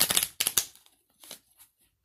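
Tarot cards being shuffled by hand: a rapid, loud run of papery rustles and clicks that stops about half a second in, followed by a couple of faint taps.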